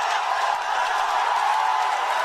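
Crowd applauding and cheering, a steady, loud wash of clapping.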